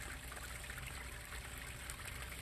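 Steady rushing background noise with no distinct events, sounding like trickling water.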